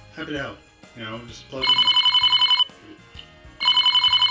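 Telephone ringing: two trilling rings of about a second each, about two seconds apart.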